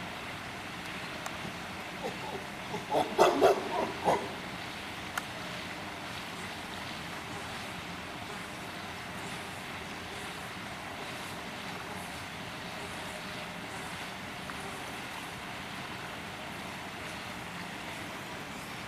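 A brief run of five or six quick, loud vocal sounds about three seconds in, over steady outdoor background noise.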